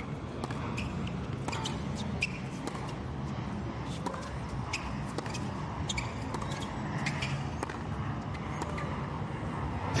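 Tennis rally on a hard court: sharp cracks of racket strikes and ball bounces every second or so, over a steady low murmur from the stadium crowd.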